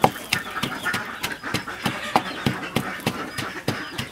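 Stone pestle pounding dry powdered ingredients in a heavy stone mortar: a steady beat of dull knocks, about three strikes a second.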